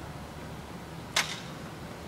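Steady low hum of a quiet hall, broken a little past a second in by one sharp click.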